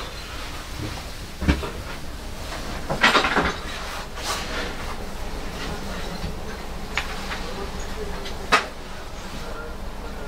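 Scattered knocks and clunks inside a locomotive cab: a sharp knock about a second and a half in, a louder clatter around three seconds, and single knocks later, over a steady low hum.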